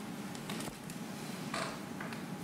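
Lecture-hall room noise with two brief soft handling sounds, about half a second and a second and a half in.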